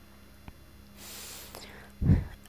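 A soft rush of air lasting about a second: a breath drawn close to a handheld microphone just before Quran recitation begins. It sits over a faint steady electrical hum.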